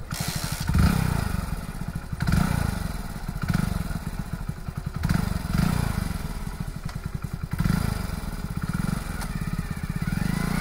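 Hero Splendor Plus's single-cylinder four-stroke engine running with a fast, even firing beat that surges louder every second or so as the throttle is blipped.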